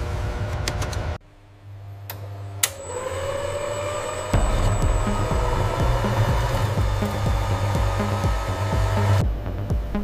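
Electronic background music. It drops out about a second in, a rising whir builds, and a steady beat comes back about four seconds in.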